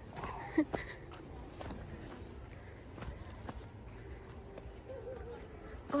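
Footsteps on a dirt trail, soft and irregular, with faint voices of people in the distance about five seconds in.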